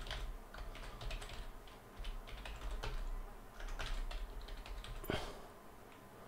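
Computer keyboard being typed on, picked up faintly by a close desk microphone: irregular light key clicks, with a louder click about five seconds in.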